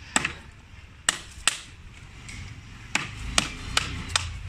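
Hand chisel cutting and chipping into the hard wood of a bantigue (Pemphis acidula) bonsai trunk: about six short, sharp cracks at irregular intervals.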